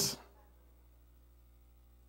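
A man's preaching voice trails off just after the start, then near silence with a faint steady hum.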